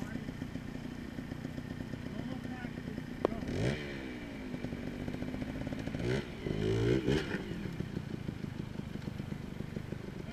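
Trials motorcycle engine idling steadily, blipped up and back down twice, about three and a half seconds in and again around six to seven seconds. A single sharp click comes just before the first blip.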